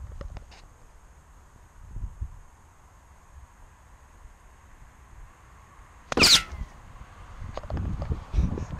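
A golf club swung at a ball on the tee: one sharp swish and strike about six seconds in, falling quickly in pitch.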